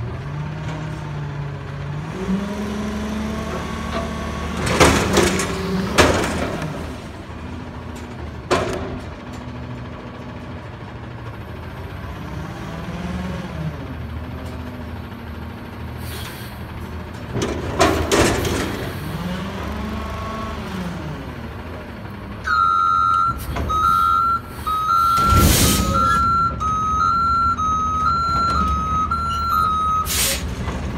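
Front-loader garbage truck's diesel engine revving up and down as its hydraulic forks lift a dumpster over the cab and empty it into the hopper, with several loud metal bangs as the bin is shaken and brought down. In the last third a reversing alarm beeps steadily as the truck backs away.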